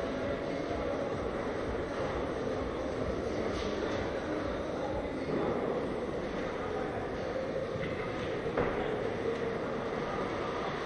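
Steady rumbling background noise of a large indoor arena hall, without a clear rhythm.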